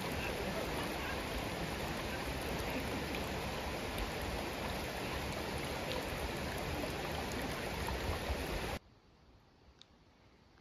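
Shallow, rocky river rushing steadily over stones. The sound cuts off abruptly about nine seconds in, leaving near silence.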